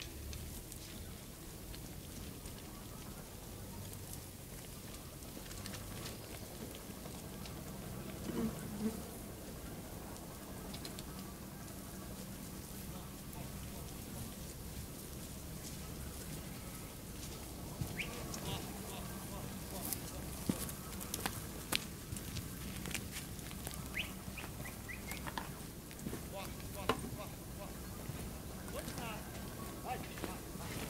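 A flock of sheep coming along a paved road: the patter of many hooves with scattered bleats. The hoof clatter gets busier and nearer in the last twelve seconds or so.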